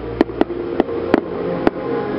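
A run of sharp, uneven clicks, about six in two seconds, over a steady background with a few held tones.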